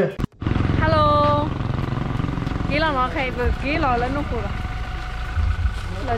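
People's voices calling out and talking over a steady low rumble, after an abrupt cut just after the start.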